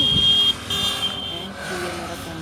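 Motorcycle traffic passing on a highway, with a steady high-pitched tone over the first second and a half, broken once briefly.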